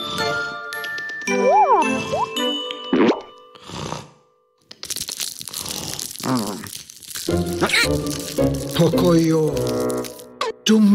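Playful children's cartoon music with sliding, boing-like tones and a character's wordless voice. It drops out briefly about four seconds in and comes back with a hissing, noisy passage before the tones return.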